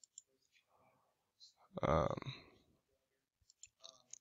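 Faint computer mouse clicks: one or two near the start and a quick run of several near the end, with a man's short "um" between them.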